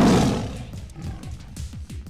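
Tiger roar sound effect over intro music, loudest at the start and dying away within about a second.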